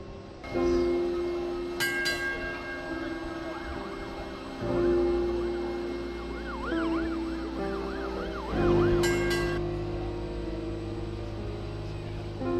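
Background music: slow, sustained synth notes that shift pitch every couple of seconds and swell in loudness, with a warbling high line in the middle and two brief cymbal-like splashes.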